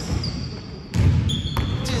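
Hip-hop track with rapping: the backing thins out for about half a second, then comes back in sharply about a second in, and the next rapped line begins at the very end.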